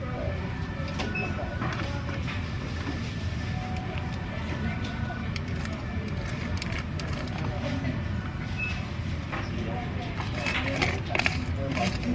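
Shop-floor background noise: a steady low rumble with faint voices mixed in, and a few short clicks and rustles of handling near the end.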